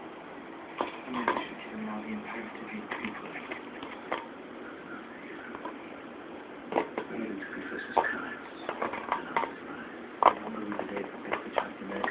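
An empty plastic bottle knocked about by a small dog at play: irregular sharp knocks and taps, clustering in the second half with the loudest one about ten seconds in. A person's voice is heard faintly at times.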